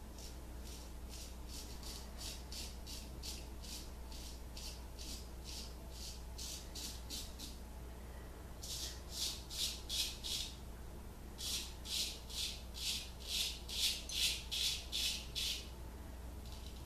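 Straight razor scraping through lathered stubble on the upper lip and chin in short, quick strokes, about three a second. The strokes are softer in the first half and louder in two runs in the second half.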